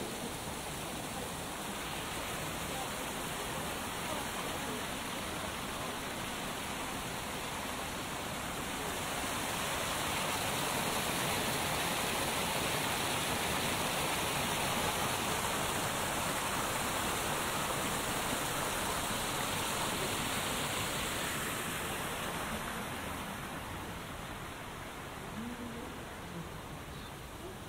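Small garden waterfall pouring over rocks into a koi pond: a steady rush of falling water. It grows louder from about a third of the way in, as the water is heard close up, and eases off near the end.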